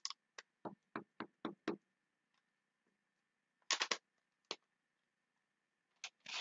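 Light taps of a rubber star stamp on a clear acrylic block being inked on an ink pad: a quick run of about seven taps in the first two seconds, then a short cluster of clicks a little past halfway and one more click.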